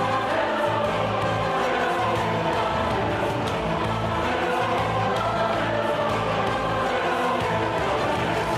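Choral music with sustained sung chords over a steady low bass, accompanying a dance piece.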